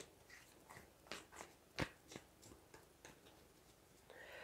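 Faint, sparse clicks and light taps of tarot cards being handled in the hands, with one sharper click a little under two seconds in.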